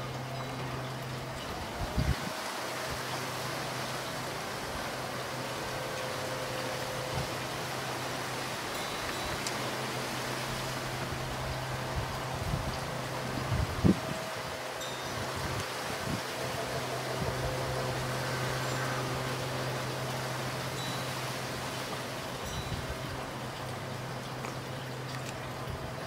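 Steady outdoor background noise under a low hum that drops out now and then, with a few faint, brief high tones and two short low thumps, about two seconds in and again near fourteen seconds.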